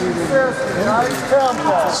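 Speech: people talking, with a light hiss in the background.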